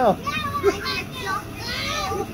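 Children's voices at play: brief, overlapping calls and chatter from young children, over a steady background hiss.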